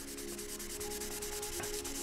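Fingertip wet-sanding of a gloss-black painted motorcycle mirror housing with 2000-grit sandpaper: a faint, steady rubbing. The paint is being flattened before it is buffed.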